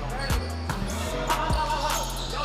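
Volleyball rally on a gym court: a few sharp slaps of hands striking the ball, over background music with a steady low bass.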